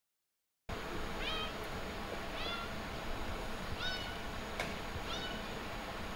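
A cat meowing four times, short calls that fall in pitch, a second or so apart, over steady background noise that begins about two-thirds of a second in. A single sharp click falls between the third and fourth meows.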